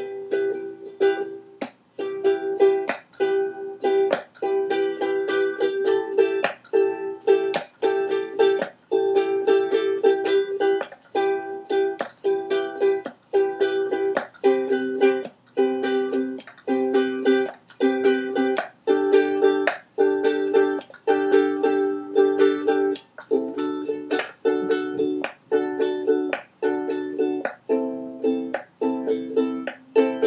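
Ukulele strummed in a steady rhythm, chord after chord, with short stops between strums; the chord changes several times along the way.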